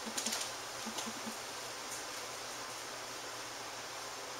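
A few light clicks in the first second and a half, then a steady background hiss.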